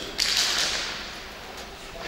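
A sponge swept hard across a concrete floor through wet paint: a sudden scraping swish a moment in that fades over most of a second, and another starting near the end.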